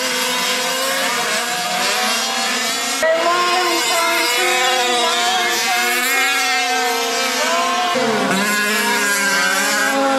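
Several 1/5-scale gas RC trucks' small two-stroke engines buzzing and revving together, their pitches rising and falling as they race. The sound changes abruptly about three seconds in and again near the eight-second mark.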